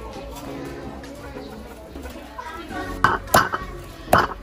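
A cleaver chopping through a whole roast chicken on a thick wooden chopping board: two sharp chops about three seconds in. Background music plays underneath.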